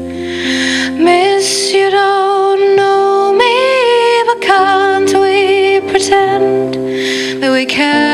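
A woman singing a slow waltz ballad live into a microphone, her voice held on long notes with vibrato over instrumental accompaniment that sustains steady chords underneath.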